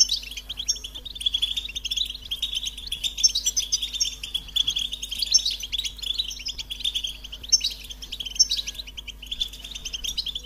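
European goldfinch singing: a continuous, fast twittering of high notes, with short, higher trills mixed in every second or so.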